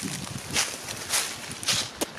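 Footsteps through grass and dead leaves: about three steps, roughly half a second apart.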